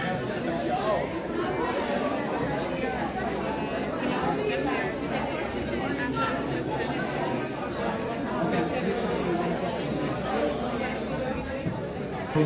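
Indistinct chatter of many people talking at once, overlapping voices with no single speaker standing out.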